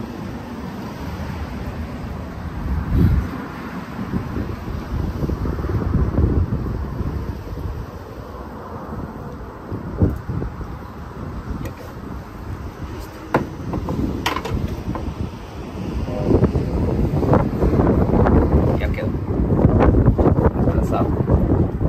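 Wind rumbling on the microphone, with a few sharp clicks from hand tools working on a trailer-light connector. The handling gets busier with more clattering in the last few seconds.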